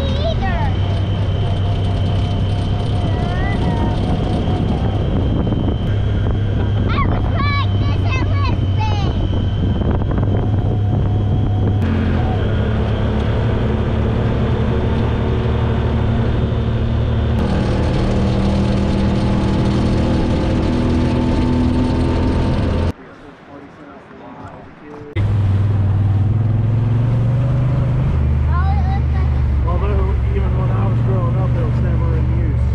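Honda Talon side-by-side's parallel-twin engine running steadily under way, with tyre and wind noise, heard from on board. The sound drops away for about two seconds near the end, then resumes.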